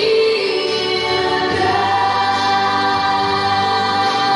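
Gospel worship song with choir singing, the voices holding long, sustained notes at a steady volume.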